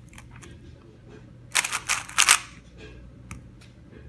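Plastic 3x3 speed cube being turned fast: a quick run of loud clicking layer turns lasting about a second, midway through, with fainter turning clicks before and a single click after.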